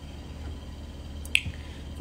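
Quiet room tone with a steady low hum, broken by a single short, sharp click a little over a second in and a faint low thump just after.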